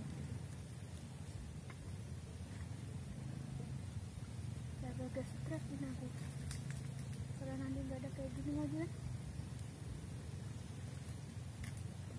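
Faint, indistinct voice heard twice, about five seconds in and again about eight seconds in, over a steady low hum.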